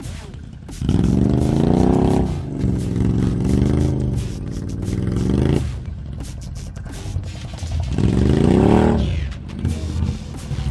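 ATV engine revving up three times, its pitch climbing with each burst: about a second in, again for a few seconds soon after, and once more near the end. Music plays underneath.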